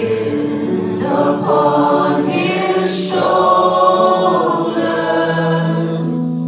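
Live worship song: voices singing in held phrases over sustained keyboard chords.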